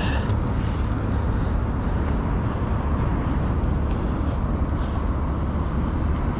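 Steady wind buffeting an action camera's microphone, a constant low rumbling noise.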